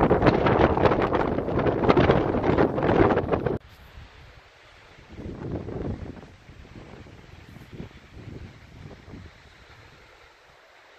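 Wind buffeting the microphone in loud rumbling gusts that cut off suddenly about three and a half seconds in, followed by weaker gusts.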